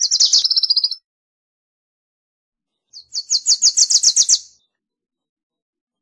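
Wilson's Warbler singing: two quick phrases, each a rapid series of high chips. The first phrase ends about a second in; the second runs from about three to four and a half seconds in.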